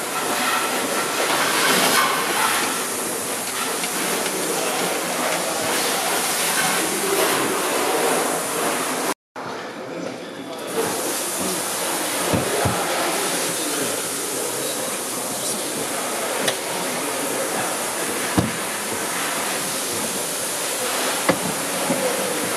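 Steady hissing shop noise with a few short knocks of tools on the hood hinge. The sound cuts out completely for a moment about nine seconds in.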